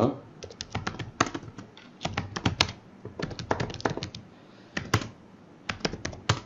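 Computer keyboard being typed on: quick runs of keystroke clicks with short pauses between them, as commands are entered.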